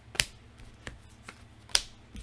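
Tarot cards being picked out of a fanned deck and laid on a pile: two sharp clicks of card on card, one just after the start and one near the end, with a few faint ticks between.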